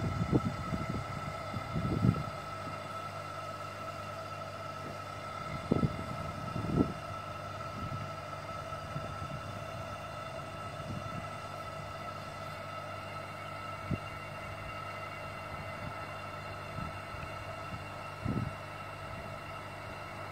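Aquarium diaphragm air pump running with a steady hum while it inflates a vinyl paddling pool. A few short, soft thumps come through over it, near the start, around 6 to 7 seconds in, and near the end.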